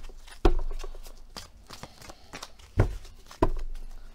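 Tarot cards being shuffled by hand, a soft rustle broken by several sharp knocks, the loudest about half a second in and just before three seconds.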